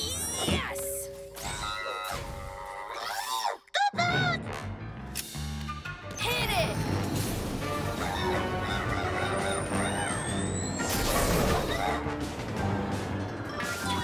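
Cartoon soundtrack: background music mixed with sound effects and brief non-word voice sounds, with a short break just before four seconds.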